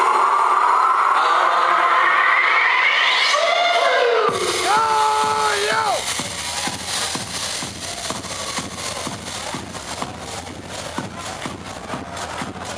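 Electronic dance music played loud over a club sound system. A rising build-up with no bass gives way about four seconds in to the drop, where the bass and a steady kick drum come in at about two beats a second.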